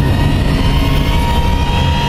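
Dramatic background score: a loud, low rumbling drone with several high held tones above it.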